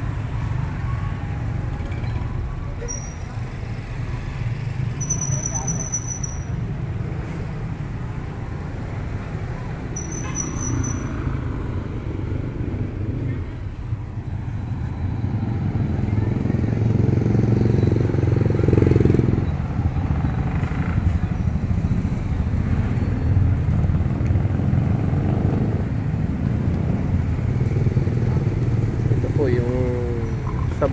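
Street traffic, with motorcycle-sidecar tricycles running and passing; the engine noise swells louder around the middle. A few short, high-pitched chirps sound in the first ten seconds.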